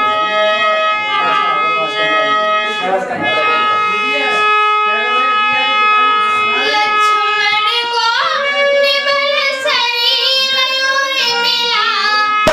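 A young woman singing a slow, drum-free opening to a dehati folk song over steady held instrumental notes. Her voice grows stronger about halfway through, in wavering, ornamented notes.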